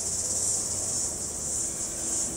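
A steady high-pitched hiss, like insects shrilling, with a faint low hum beneath it.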